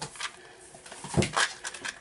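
A few clicks and knocks from a small plastic embellishment container being worked open by hand. The loudest knock comes a little over a second in.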